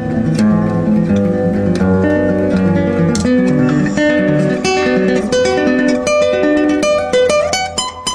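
Instrumental music on plucked acoustic guitar, with quicker runs of higher notes in the second half.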